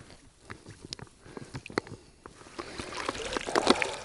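Water sloshing and splashing around a soft plastic bottle held underwater with a sock over its mouth, filling through the sock as a coarse pre-filter, with scattered small clicks. The splashing grows louder in the last second and a half as the bottle is lifted out and water runs off the sock.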